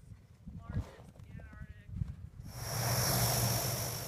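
Low wind rumble on the microphone. About two and a half seconds in, the steady high whine and rush of an LC-130 Hercules's four turboprop engines running starts suddenly.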